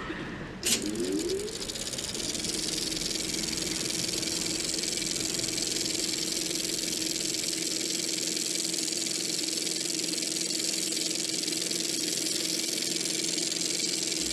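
A click, then a mechanical whir that rises in pitch over about a second and settles into a steady rattling run with a strong hiss and a held hum.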